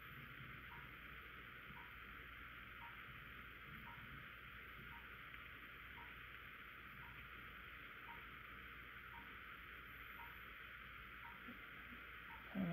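Near silence: steady room hiss with a faint, regular tick about once a second.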